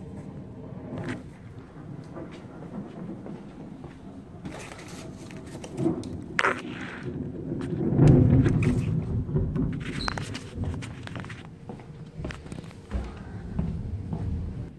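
A loud, low rumble of thunder swells about eight seconds in and fades away over several seconds. Knocks and rustles from the phone being handled come before it.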